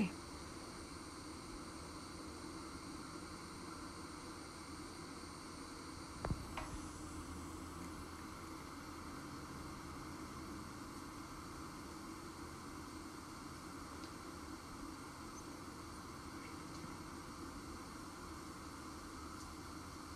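Faint steady outdoor background hiss with a low hum, and one short soft tick about six seconds in.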